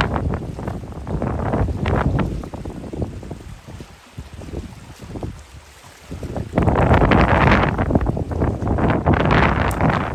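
Wind buffeting the microphone in loud gusts, dropping away in the middle and coming back strong about two-thirds of the way through.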